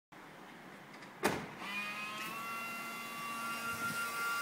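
A sharp click about a second in, then a BMW E90 headlight washer pump starts with a steady electric whine that rises slightly in pitch as it comes up to speed, driving the pop-up headlight washer jet nozzles.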